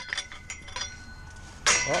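Metal chain-link fence top rail clinking against its post-top fitting as it is worked loose: a few sharp metallic clinks in the first second, leaving a thin ring that fades out.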